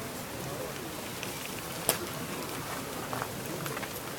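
Steady outdoor background hiss, with one sharp click about two seconds in.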